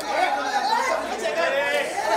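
Crowd chatter: many voices talking and calling out at once, overlapping so that no single speaker stands out.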